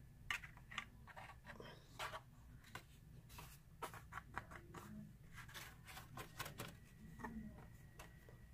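Faint, scattered rustles and light taps of cardstock being handled and picked up, over a low steady room hum.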